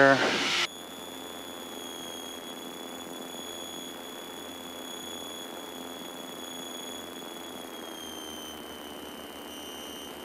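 Steady drone of a Piper Seminole's twin engines heard inside the cabin, with a thin high whine above it. The pitch dips slightly about eight seconds in. A short laugh comes at the very start.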